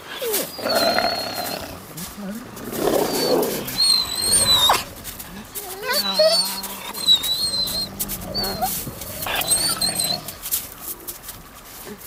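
Gray wolves squabbling at a carcass: rough bouts of snarling and growling, broken by repeated high, wavering whines and squeals.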